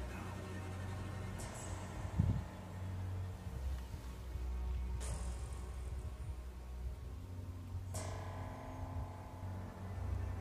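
Colima volcano erupting: a low, steady rumble, with a few brief hissing surges.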